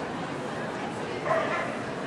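A dog gives one short, high yelp about halfway through, over the steady murmur of voices in a crowded hall.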